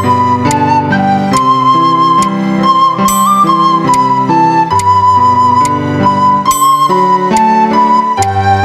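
Plastic soprano recorder playing a slow melody of held notes, with a lower chordal accompaniment sounding underneath.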